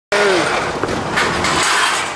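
Steady noise of road traffic going by, loud and even, with a brief voice-like sound near the start.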